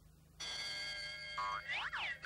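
Cartoon sound effect: a bright held musical chord starting about half a second in, then a springy boing with pitch sliding up and down near the end.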